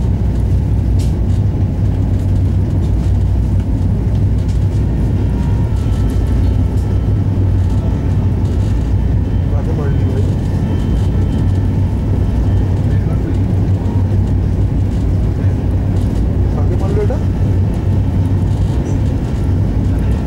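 Steady, loud, deep running rumble of a passenger train heard from inside a moving Shatabdi Express coach: wheels and bogies on the track and the coach body rattling, even and unbroken.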